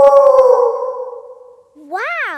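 Cartoon children's voices howling "Ow!" like wolves at the moon, the howl held and then fading away over about a second and a half. Near the end, a single voice starts a new sharp rise and fall in pitch.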